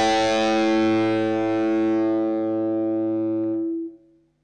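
Final chord of a distorted electric guitar held and ringing out, fading slowly, then cut off suddenly near the end.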